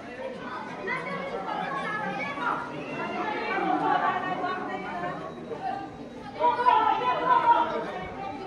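Several people talking and calling out at once, overlapping chatter, with a louder stretch of voices about six and a half seconds in.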